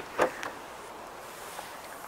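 Faint, steady background hiss with nothing distinct in it.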